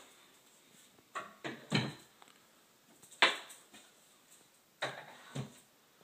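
Skateboards being set onto the wooden rungs of an oak wall rack: several hard wooden knocks and clacks in small groups, the loudest about three seconds in.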